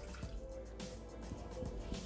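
Quiet background music with a faint pour and drip of water: a small glass of water emptied into the stainless-steel mixing bowl of a Bimby (Thermomix) kitchen machine.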